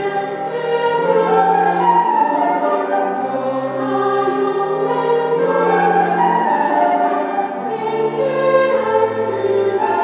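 Youth choir singing slow, sustained chords in several parts, with a low held line beneath.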